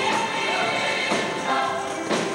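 Gospel choir singing together, holding notes.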